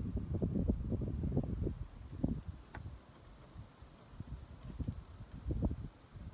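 Wind buffeting the microphone: an uneven low rumble, heavier in the first two seconds and lighter after, with a single faint click about halfway through.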